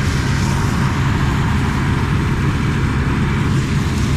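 Massey Ferguson 86 combine harvester running at a steady pace: a constant low engine drone under an even rush of threshing and fan noise.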